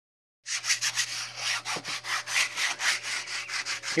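Hand sanding of a fan's body with sandpaper: quick back-and-forth scraping strokes, about four or five a second, starting about half a second in. The fan is being sanded down ready for painting.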